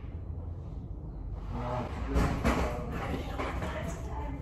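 Indistinct, muffled voices talking, starting about a second in and loudest around the middle, over a low steady rumble.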